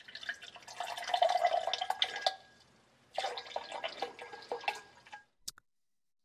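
1960s American Cut Crystal soda siphon dispensing seltzer into a drinking glass in two squirts, water splashing and filling the glass, with a short click near the end. The old CO2 cartridge has little pressure left, so the water comes out barely carbonated.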